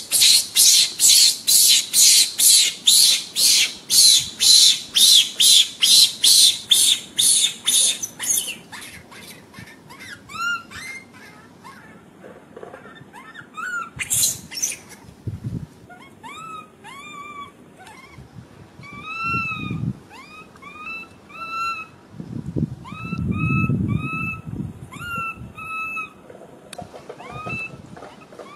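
Animal sounds. For the first eight seconds there is a loud, rhythmic pulsing buzz, about three pulses a second. After that come short, rising, whistle-like chirping calls, repeated many times to the end.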